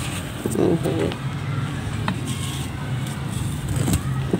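Dry mud lumps crushed and crumbled between the hands, the powder falling and crackling, over a steady low hum. A brief louder burst comes about half a second in.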